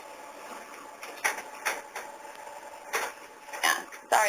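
A faint steady hiss, then about five brief, sharp clicks spread over the last three seconds, two of them close together near the end.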